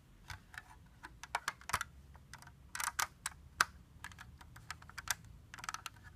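Plastic Lego bricks clicking and knocking as they are handled and pressed into place, an irregular run of small sharp clicks with one louder click near the middle.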